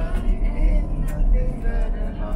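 Tour coach running, a steady low engine and road rumble heard from inside the passenger cabin.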